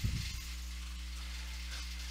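Steady low electrical hum with a faint hiss, the background noise of the recording with no other sound over it.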